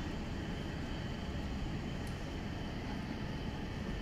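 Steady low rumbling background noise with no clear source, with a faint snip of haircutting scissors about two seconds in.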